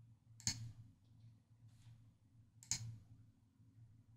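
Two faint computer mouse clicks, about two seconds apart, over a low steady hum; each click has a softer second tick just after it, the press and release of the button.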